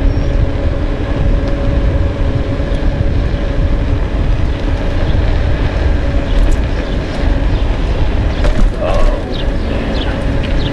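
Wind buffeting a handlebar-mounted action camera's microphone during a fast ride on an electric two-wheeler, a dense steady rumble with road noise under it. A faint steady tone runs through it, and a few short sharp sounds come near the end.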